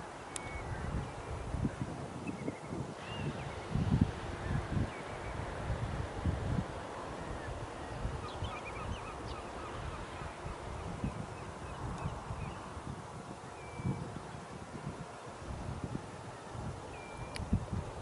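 Wind buffeting the microphone in irregular gusts, with short bird calls scattered through.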